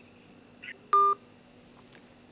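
A short electronic beep from a smartphone about a second in: the tone of a phone call being ended.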